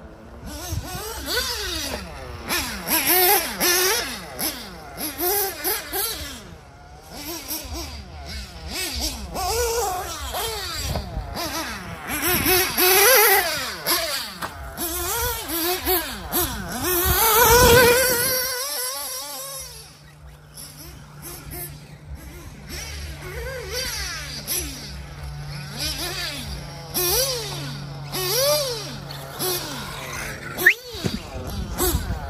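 Picco P3 TT nitro engine of an HB D817 1/8-scale buggy revving up and down over and over as the car is driven round the track, loudest about 17 seconds in. After a sudden drop just before the 20-second mark, it holds a steady low note.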